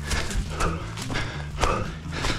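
A runner's footsteps on forest ground, about two a second in an even rhythm, picked up by a head-mounted camera.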